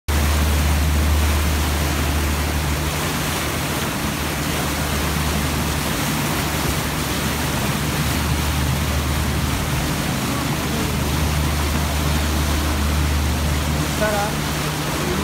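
Steady low drone of a river tour boat's engine under the rushing noise of its churning wake water.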